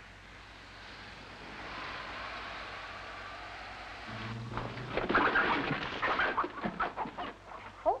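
A steady hiss for the first half, then chickens in crates clucking and squawking, busy and overlapping, from about halfway in.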